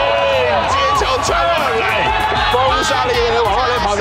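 People's voices talking and calling out over background music.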